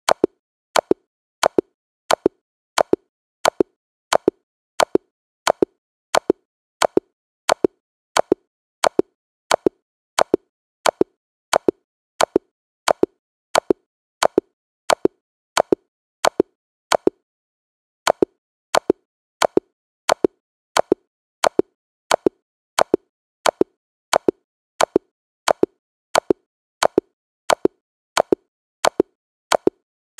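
Chess checkmate sound effect played over and over: a short sharp click about every 0.7 seconds, with one pause of about a second around the middle.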